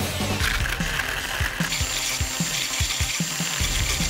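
Countertop blender motor starting and running, blending pineapple, strawberries and coconut milk into a smoothie. The whine steps up to a higher, steadier pitch about halfway through.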